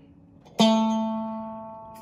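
Electric guitar, Stratocaster-style: a single picked note struck about half a second in, then left to ring and fade slowly.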